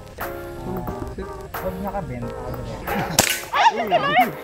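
Background music with a steady melody, broken about three seconds in by one sharp crack of an airsoft pistol shot, the loudest sound here. Bending high voice sounds follow near the end.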